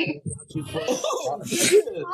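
Voices talking and laughing over a live video call, with one short, sharp breathy burst about one and a half seconds in.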